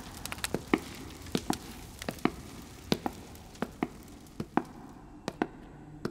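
A run of sharp clicks and knocks, many in close pairs repeating about every two-thirds of a second.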